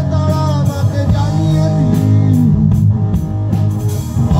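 Live rock band playing loudly: electric and bass guitars with a drum kit, and some singing over them.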